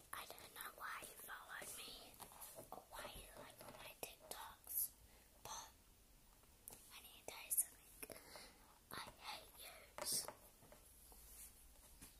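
A girl whispering close to the microphone, quiet, breathy speech with sharp hissing 's' sounds.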